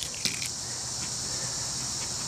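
Steady high-pitched chirring of insects, with a few brief scratchy clicks in the first half-second.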